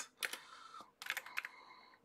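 Computer keyboard keystrokes: a few quick key clicks near the start, then another short run of clicks about a second in, as text is typed into a search field.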